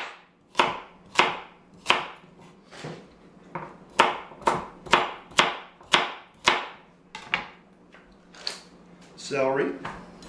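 Kitchen knife chopping carrots and celery into large chunks on a cutting board: a series of sharp knife strikes against the board, about two a second.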